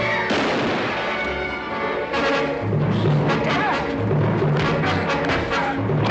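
Orchestral background score with sustained instrumental tones, joined about halfway in by a repeating pattern of low booming notes.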